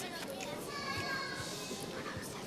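Faint, indistinct children's voices with no clear words.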